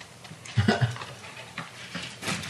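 A man imitating a pig, a few short grunts about half a second in.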